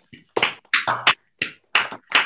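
Hand clapping picked up through video-call microphones: a run of sharp, unevenly spaced claps, about four a second.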